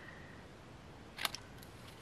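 Scissors snipping: two or three quick, sharp snips about a second in, trimming tape at the edge of a paper page.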